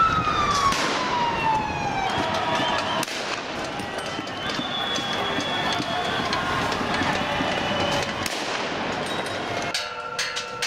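Police vehicle siren sweeping down in pitch over the first couple of seconds, then wailing on at shifting pitches, with scattered sharp bangs over it.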